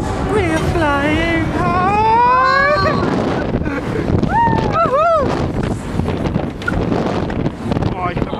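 Riders on a Turbo Force thrill ride letting out a long rising wail, then a few short shrieks about halfway through, over wind rushing past the microphone as the arm swings them high and over.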